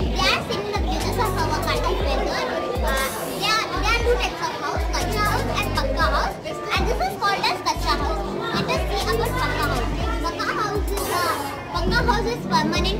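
Many children's voices talking over one another in a busy hall, with music and a heavy bass line playing underneath.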